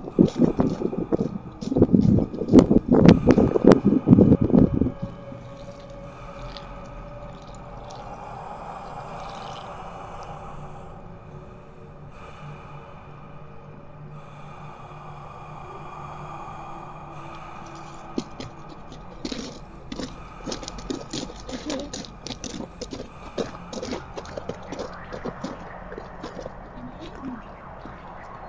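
Footsteps crunching on a gravel path for the first five seconds. Then comes a quieter stretch of steady held tones. Then, from about 18 s, quick crunching footsteps on gravel and dry leaves.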